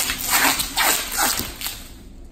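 Packing tape pulled off its roll in a run of short, noisy strips, each with a squeal that bends in pitch, as it is wrapped around a rolled bundle of wood veneer sheets. The pulls die away near the end.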